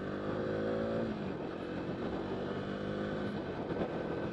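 Bajaj Dominar 250's single-cylinder engine accelerating hard in a pickup run from first gear. Its note climbs steadily, breaks about a second in and climbs again, as at a gear change.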